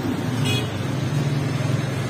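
Flatbread oven's burner running with a steady low hum and rushing noise. A brief faint high squeak comes about half a second in.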